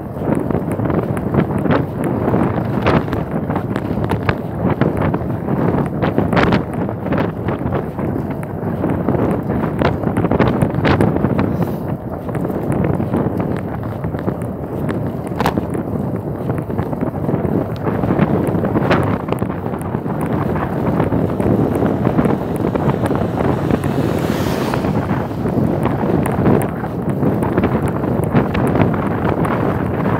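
Steady wind buffeting the microphone of a camera on a moving bicycle, with occasional short sharp knocks.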